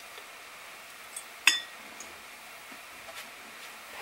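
Quiet room tone, broken about a second and a half in by one sharp clink of a hard object that rings briefly, with a few faint handling ticks around it.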